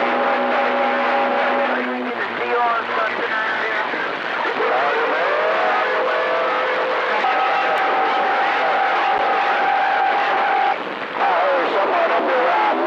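CB radio receiver hissing with static, with steady heterodyne whistles that come and go and garbled, mistuned voices of other stations breaking through.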